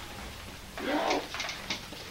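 A person's voice: one short, low murmured sound about a second in, over faint room noise.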